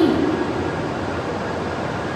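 Steady, even rushing noise of a Kagayaki Shinkansen train running into the platform.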